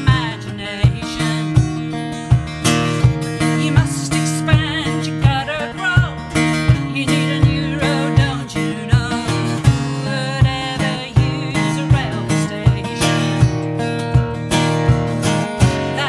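A woman singing with a strummed acoustic guitar, with a steady low beat running under the chords.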